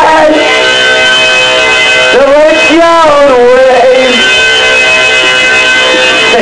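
Live band playing a song: held, ringing chords sustain throughout while a sung vocal line comes in about two seconds in and trails off near four seconds.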